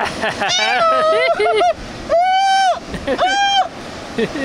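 A high-pitched voice making wordless calls: a short run of wavering sounds, then two held high notes, the first just over half a second long, over a steady hiss of background noise.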